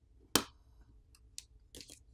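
Plastic pry pick prying the small subboard of a Poco M4 5G up from the phone's frame: one sharp click as it pops loose, then a few faint ticks and a light scrape near the end as it is lifted.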